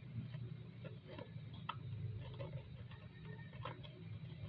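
Ribbon and a cardboard box being handled while a ribbon is tied: irregular light ticks and rustles over a steady low hum.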